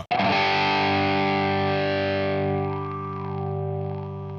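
Electric guitar played through the NUX Trident's Doctor envelope filter emulation: a single chord struck at the start and left ringing, its bright top dying away a little past halfway through.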